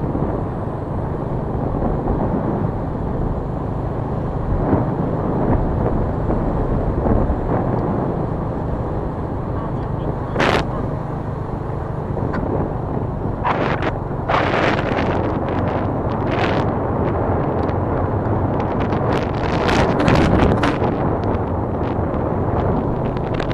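Steady engine and road noise from a vehicle driving along a road, with wind buffeting the microphone in sharp gusts from about halfway through.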